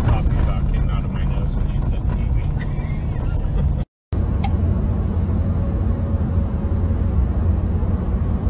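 Steady low rumble of a car's engine and road noise heard inside the cabin. It drops out for a moment about four seconds in, then returns as the car drives along the road.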